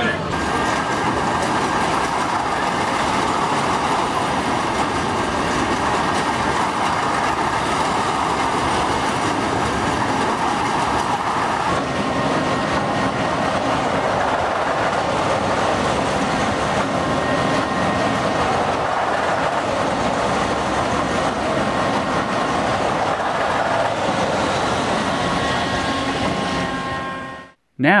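Busy fairground ambience: a steady din of crowd chatter mixed with the mechanical clatter of rides, cutting off abruptly near the end.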